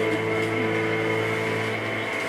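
Funeral music holding one long sustained chord, steady with no new notes struck.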